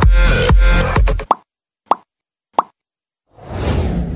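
Electronic dance music with a heavy beat that stops about a second in, followed by three short pitched plop sound effects, then a whoosh that swells up near the end.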